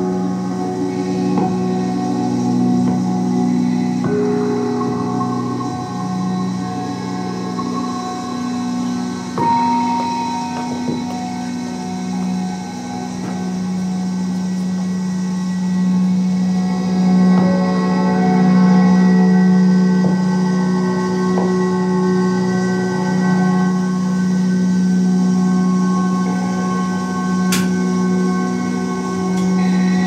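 Ambient electronic drone music built from field recordings processed live: a steady low hum-like tone held throughout, with sustained bell- or singing-bowl-like higher tones fading in and out over it. A couple of single clicks, one about nine seconds in and one near the end.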